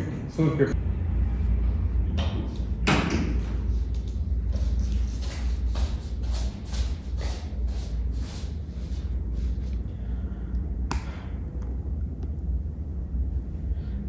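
A run of short, sharp camera shutter clicks during a photo shoot, most of them between about five and nine seconds in, with two louder knocks near three and eleven seconds, over a steady low rumble.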